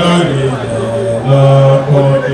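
A man chanting in long held notes that step between a lower and a higher pitch.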